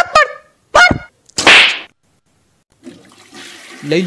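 Cartoon slap sound effect: one loud, sharp smack about a second and a half in, just after a brief shouted word.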